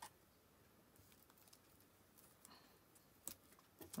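Near silence: faint handling of a small die-cut piece of metallic paper being picked apart by hand, with two small ticks late on.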